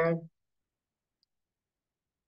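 A woman's voice finishing a word at the very start, then near silence.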